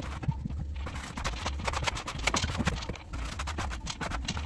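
Quick, irregular scraping and tapping strokes of a hand tool working cork wallpaper against the ceiling, over a steady low hum.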